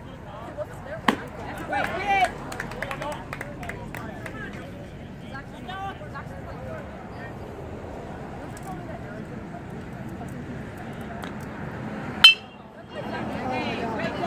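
Spectators chattering and calling out around a baseball diamond, with a sharp pop about a second in. About twelve seconds in comes one loud, ringing metallic ping of a metal baseball bat hitting the ball, followed by louder shouting as the runners go.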